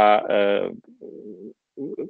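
A man talking, broken by a short pause about a second in that holds a brief, quieter low sound before he goes on speaking.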